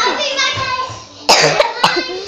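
A girl talking briefly, then two short noisy bursts: a fuller one a little past the middle and a sharper, shorter one near the end.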